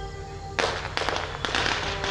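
A held musical note gives way about half a second in to a crowd clapping: a dense, crackling patter of many hands.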